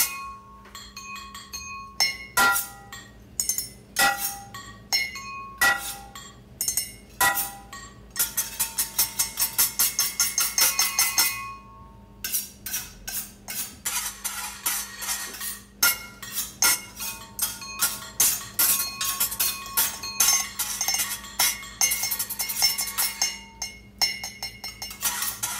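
Percussion quartet playing kitchen utensils, glassware and cookware as instruments: sharp clinking and ringing taps in a rhythmic pattern, a fast roll of rapid strikes about eight seconds in, then a dense run of quick strikes through the second half.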